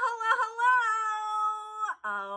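A woman's voice holding one long, high, drawn-out sung note, with a quick wobble near the start, cutting off just before the end.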